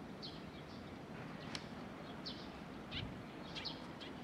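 Small birds chirping: short, falling high chirps, about two a second, over a steady low background rumble.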